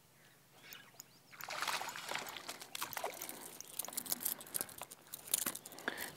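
A small crappie hooked on a jerkbait splashing at the water's surface as it is reeled in, starting about a second and a half in as a run of quick sloshes and sharp clicks.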